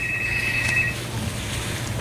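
Electronic telephone ring: a trilling two-tone chirp lasting about a second, then stopping, over a low steady hum.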